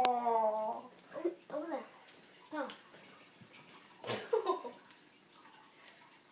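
A small pet dog whining, with a long falling whine at the start and a few shorter whimpers after.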